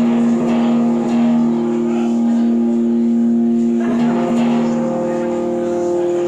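Electric guitar through an amp sustaining a held, droning chord with no strumming rhythm, changing to a new chord about four seconds in.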